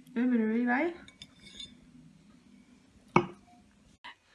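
A brief voice in the first second, then faint clinks of a table knife against a ceramic bowl, and a single sharp knock of cutlery on crockery about three seconds in.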